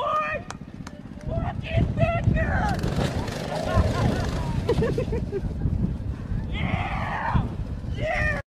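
People shouting and yelling over a continuous low rumble, with a few sharp knocks, as a small motorbike and its rider tumble over.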